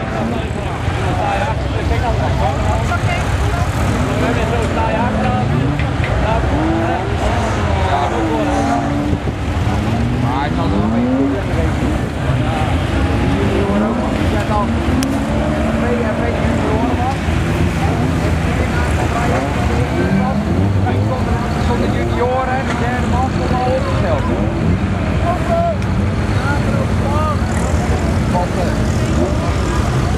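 Several racing stock car engines revving up and down, their pitch rising and falling as they accelerate and lift off around the track.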